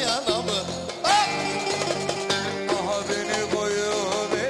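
Live Turkish folk music of the Ankara oyun havası kind: a bağlama (long-necked saz) plucking a melody, with a vocal line gliding in and out.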